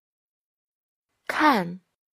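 Speech only: a single short spoken syllable with a falling pitch about a second and a half in, after silence.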